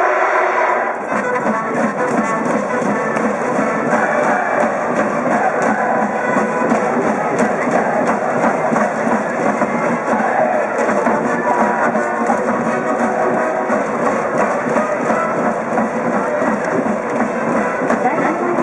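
High school brass band with drums playing a baseball cheer song over a steady drum beat, with a large student cheering section chanting along.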